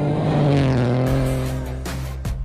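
Rally car engine at speed on a gravel stage, its pitch falling in the first half second and then holding steady, with a hiss joining about a second in.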